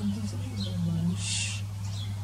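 Backyard birdsong: a low, wavering hooting call in the first half, then a short high chirp about one and a half seconds in, over a steady low hum.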